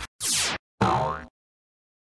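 Two short cartoon sound effects about half a second apart: a falling swoosh, then a boing, cutting off into silence.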